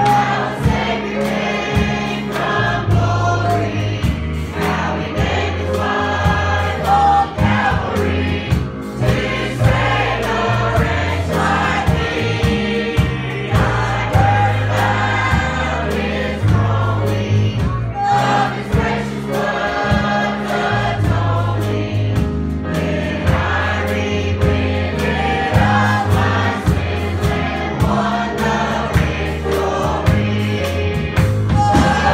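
Two young girls singing a gospel song together, backed by a drum kit and an electric bass guitar.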